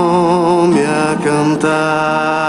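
A small church music group singing a hymn in long held notes with vibrato, accompanied by acoustic guitar; the sung pitch changes twice.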